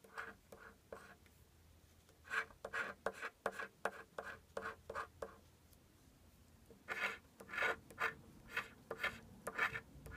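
Scratch-off lottery ticket being scratched: quick back-and-forth scrapes across the card's coating, about three strokes a second, in three runs with short pauses between.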